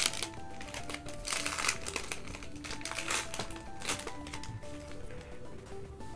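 Foil trading-card booster wrapper crinkling as it is torn open and the cards are pulled out, in irregular bursts, loudest about a second and a half in. Soft background music with a slow melody plays under it.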